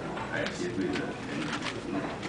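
Quiet, low voices murmuring in a meeting room, with a few sharp clicks scattered through.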